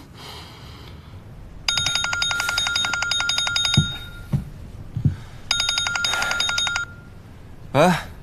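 A mobile phone ringing with an electronic ringtone of fast, evenly pulsed beeps, in two bursts: a longer one of about two seconds, then a shorter one of just over a second. A few soft low thumps fall between the rings.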